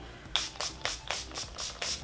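Small fine-mist pump bottle of NYX First Base Primer Spray spritzed quickly over and over: about seven short sprays, roughly four a second, starting a moment in.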